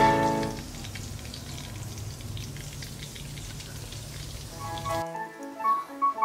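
Hot oil crackling and sizzling around spring rolls frying in a wok, a dense patter of small pops. Music plays over the first half second and comes back just before the end.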